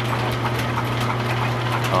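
Overhead line shaft and flat belts running over their pulleys: a steady low hum with irregular light clicks and ticks throughout.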